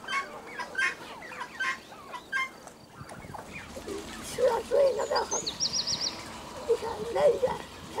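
Farmyard turkeys and other domestic fowl calling in short wavering bursts, with a high, quick trill from a small bird about halfway through.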